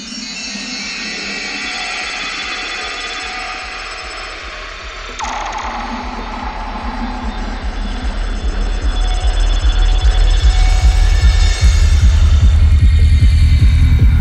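The opening of a progressive psytrance track: a dense, textured electronic intro with a fast pulsing bass. About five seconds in a sweep falls from high to low, then the track builds and grows louder as heavy bass comes in.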